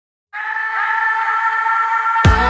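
Held synthesizer chord of several steady tones that starts after a moment of silence, about a third of a second in, opening the music track before the beat comes in.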